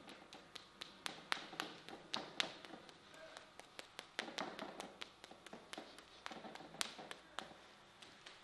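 Hands slapping and tapping a bare arm in a massage: sharp, irregular pats, about three or four a second, with softer rubbing of skin between them.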